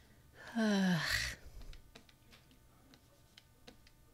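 A woman's voiced sigh, falling in pitch and lasting about a second, about half a second in. Faint scattered clicks follow.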